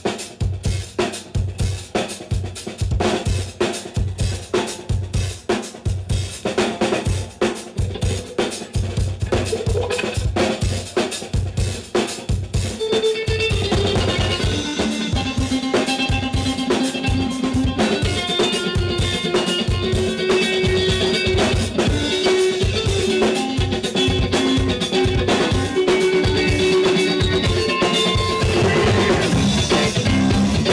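Rock drum kit playing a steady bass-drum-and-snare beat on its own to open a song; about thirteen seconds in, bass guitar and electric guitar come in and the full band plays on.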